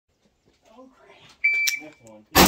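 Electronic shot timer's start beep: one steady, high-pitched beep about one and a half seconds in, signalling the shooter to begin firing. A brief voice comes just before it.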